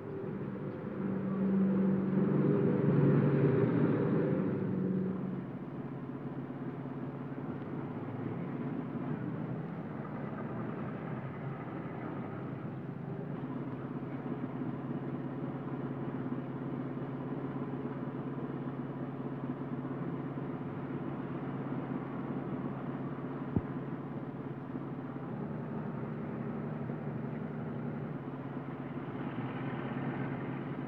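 Car engine running as the car drives, louder for a few seconds near the start and then a steady drone. A single sharp click about three-quarters of the way through.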